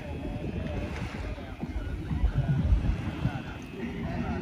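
Wind buffeting the microphone, loudest in gusts around the middle, over the wash of light waves at the shoreline, with faint voices of people nearby.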